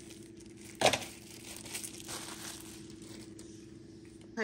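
Cardboard and plastic packaging being handled and pushed into a plastic trash bag: a single knock about a second in, then faint crinkling and rustling.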